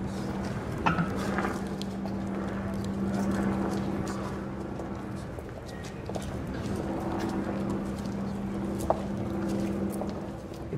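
Outdoor ambience with a steady low hum and scattered sharp clicks and taps, with a louder click about a second in and another near the end.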